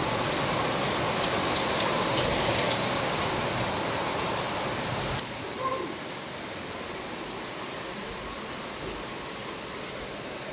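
Heavy rain falling steadily outside an open window, a dense hiss. About five seconds in it drops to a fainter hiss as it is heard from further inside the house.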